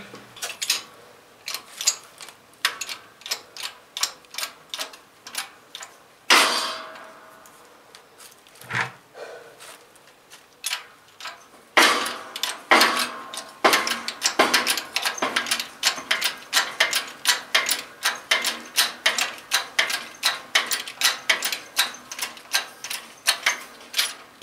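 A 12-ton hand-pumped hydraulic shop press clicking with each pump stroke as it forces a press-fit wrist pin out of a small-block Chevy piston and connecting rod. About six seconds in comes a single loud crack with a ringing tail, the pin breaking loose. It is followed by a steady run of clicks, about two to three a second, as pumping goes on.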